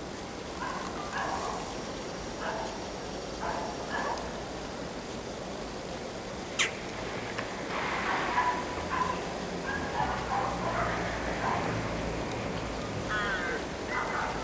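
Birds calling in short repeated calls, with one sharp click a little past the middle, over a low steady rumble from a diesel locomotive running at the far end of the platform.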